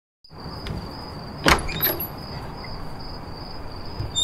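Ambient sound inside a city bus: a steady rumble with a constant high whine. A sharp clunk comes about one and a half seconds in, followed by a lighter knock.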